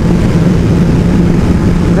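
2005 Kawasaki ZX12R inline-four engine running under way at road speed, with a brief stutter. The stutter is the sign of an unresolved fuelling issue.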